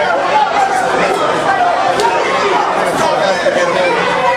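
Crowd of spectators chattering and calling out: many overlapping voices at once in a large hall.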